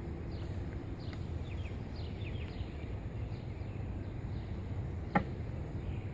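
A metal hive tool working at frames stuck down with propolis in a wooden beehive box, with one sharp knock about five seconds in. Birds chirp faintly over a low outdoor rumble.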